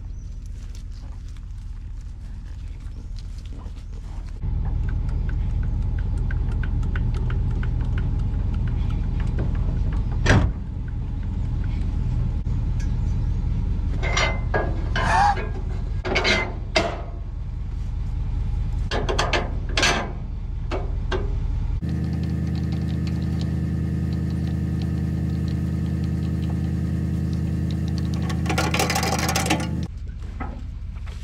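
A vehicle engine running steadily, louder from about four seconds in, with a sharp click and then a run of metal clanks from the feed wagon's tongue jack and hitch in the middle. Near the end of the first two-thirds it cuts to a more even engine hum.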